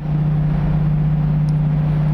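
Loud, steady drone of a motor vehicle's engine on the street, a constant low hum over a dense rumble, picked up by an outdoor microphone.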